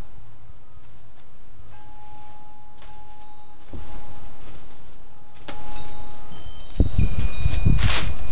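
Wind chimes ringing in a light breeze: several long ringing tones at different pitches overlap and fade, with a few light strikes. Near the end a low rumble comes in on the microphone.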